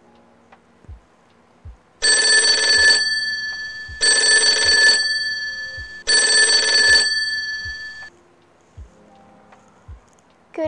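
A phone ringtone rings three times, about two seconds apart: each ring is a set of steady electronic tones, held for about a second and then fading away. Faint low taps recur about once a second underneath.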